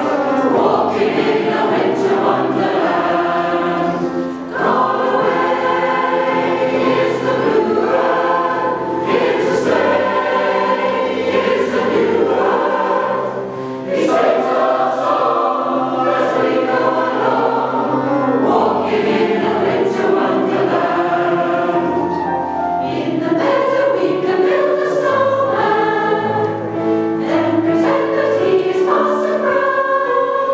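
Mixed SATB amateur choir, women's and men's voices together, singing a song in harmony. The singing carries on without a break, with only two short dips between phrases.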